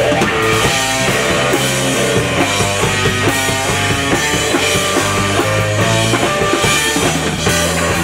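Live blues-rock band in an instrumental break: an electric guitar plays a solo of quick single-note runs over a drum kit and sustained low bass notes.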